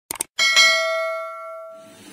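Two quick mouse clicks, then a single bright notification-bell ding that rings out and fades over about a second and a half: the sound effect of a subscribe-button animation clicking the bell icon.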